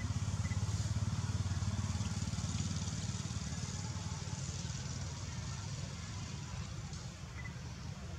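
A motor vehicle engine's low rumble with a fast, even pulse, loudest in the first few seconds and slowly fading, over a steady hiss.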